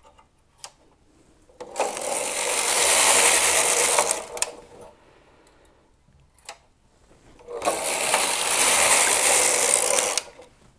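Singer knitting machine carriage pushed across the needle bed twice, knitting a row each time. Each pass is a rushing mechanical clatter of about two and a half seconds that builds as it goes, with a few light clicks in the quiet between passes.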